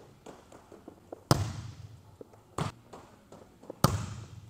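Volleyballs striking a hard gym floor and being hit, three sharp thuds over a few seconds, each with the echo of a large gym hall.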